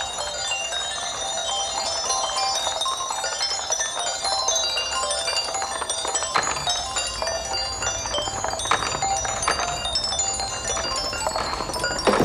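A tinkling tune of struck keys with ringing, chime-like notes, as played by the Eames musical tower, where rolling marbles strike a set of keys arranged for a tune.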